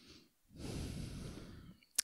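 A man's breath into a close podcast microphone, about a second long, with a short mouth click at the end as he is about to speak.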